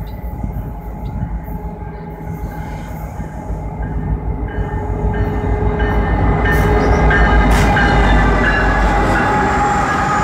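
CN freight train with a diesel locomotive approaching and passing close by, its rumble growing steadily louder until about seven seconds in. Freight cars then roll past.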